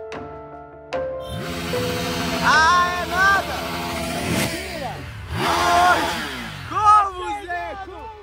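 A motorcycle engine revving, its pitch sweeping down twice, with people shouting and whooping over it.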